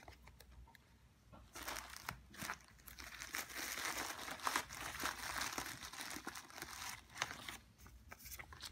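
Plastic packaging crinkling and crackling as it is handled. It starts about one and a half seconds in, grows busiest in the middle, and dies away near the end.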